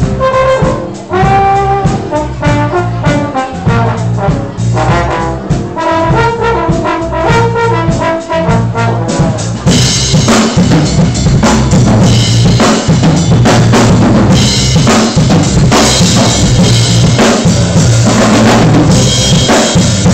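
Jazz ensemble with a trombone solo, a single melodic trombone line over bass and drums. About halfway through, the drums and cymbals come in much louder and the band plays on.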